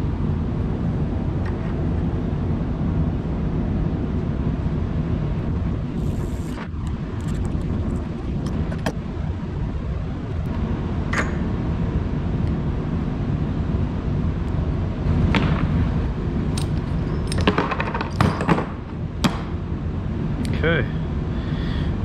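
Sharp metal clicks and clinks from a wrench, a gear puller and ball bearings being handled on a workbench while pulling the bearings off the rotor shaft of a Gast rotary vane aerator pump. There are a few clicks from about six seconds in and a cluster later on, over a steady low rumble.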